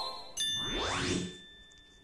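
Letter-tracing app's sound effect: a bright bell-like ding about a third of a second in, ringing on and fading out, with a rising swoosh under it, marking the traced letter as complete.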